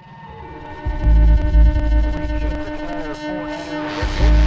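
Electronic music collage: a steady hum drone under a deep bass throb that pulses on and off, with a run of short falling high chirps about three a second and warbling electronic squiggles. It fades up over the first second after a sudden dropout.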